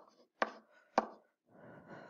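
Pen stylus tapping on a writing tablet or screen while handwriting: two sharp taps about half a second apart, then a faint soft rustle near the end.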